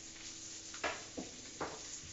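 Breaded pork chops frying in a pan, a steady sizzle, with three short knocks in the second half.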